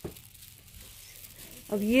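Faint steady room hiss with one brief click at the start, then a voice begins speaking near the end.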